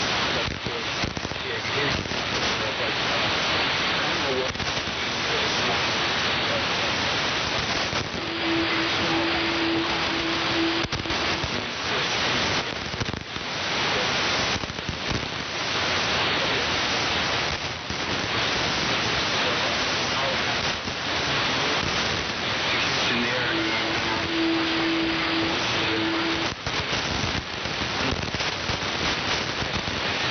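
Shortwave AM receiver on the 75-metre band putting out heavy static with frequent brief fades. A steady low tone comes in twice, each time for about two and a half seconds. The noise reflects poor band conditions, which the operator puts down to a G1 solar storm.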